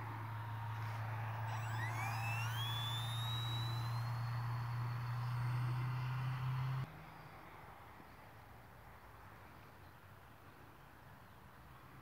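Electric motor and folding propeller of an F5J RC glider running at full power in the climb: a steady low drone with a motor whine that rises in pitch over the first few seconds and then holds. The motor cuts off abruptly about seven seconds in, leaving only a faint background.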